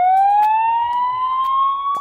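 Cartoon sound effect: a single siren-like tone that glides upward, quickly at first and then levelling off as it holds near its top pitch.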